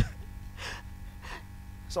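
A man's sharp gasping breath into a close handheld microphone, popping it, then two more breathy gasps about half a second apart.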